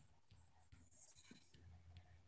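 Near silence, with a few faint taps and a soft brushing of fingers on the phone that is recording.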